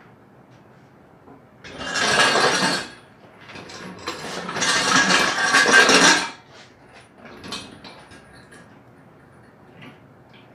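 Engine stand's swivel head turning a Honda K20 long block over: two stretches of metallic scraping and rattling, about a second and then about two seconds long, followed by a few light knocks.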